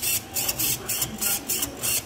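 Small hobby servo whirring in quick repeated bursts, about four a second, as it swings a toy car's front-wheel steering linkage back and forth.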